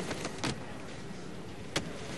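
Quiet background ambience with a couple of soft ticks in the first half second and one sharp click just before the end.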